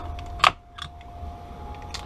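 A sharp click about half a second in, then a few faint clicks, as the plastic lens block is pulled off a freshly mounted eyeglass lens, over a low steady hum.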